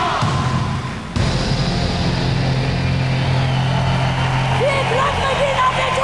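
A live rock performance in an arena: a steady low drone under the din of the hall, then a woman singing into a microphone in sliding, held phrases from about four and a half seconds in.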